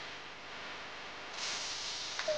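A steady hiss that grows louder and brighter about one and a half seconds in.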